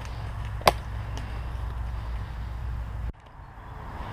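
Steady low rumble of wind on the microphone, with one sharp click under a second in and a fainter tick just after; the rumble cuts off abruptly about three seconds in.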